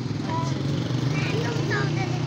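A vehicle engine running steadily at idle, a low even drone, with a child's voice calling over it.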